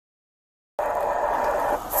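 Audio track muted to dead silence for most of the first second, then about a second of steady, indistinct noise before speech resumes.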